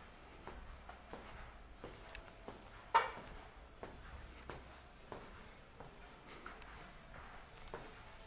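Faint footsteps on a hard tiled floor at an easy walking pace. About three seconds in there is one louder, sharp sound that rings briefly.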